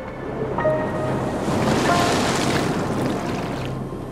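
A rush of sea surf that swells up, is loudest about two seconds in and fades away near the end, over soft background music.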